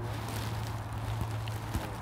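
Clothing rustling against a clip-on lavalier microphone, with a few faint knocks, as the mic on the shirt front is handled and moved. A steady low hum runs underneath.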